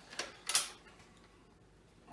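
Two sharp clicks from a plastic socket-set case and its tools being handled, the second louder, both in the first second.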